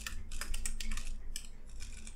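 Computer keyboard typing: several separate keystrokes at an uneven pace.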